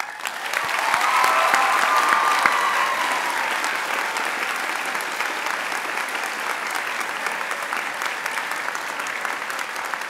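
Large audience in a school gymnasium applauding as one sustained round of clapping. It starts suddenly, is loudest in the first few seconds with a few cheers, then settles to steady clapping.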